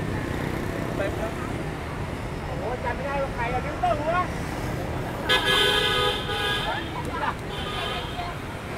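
A vehicle horn sounds for about a second and a half, about five seconds in, over a steady wash of road traffic and passers-by talking.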